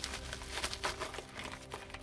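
Packaging being handled: rustling and crinkling with a few short, light knocks.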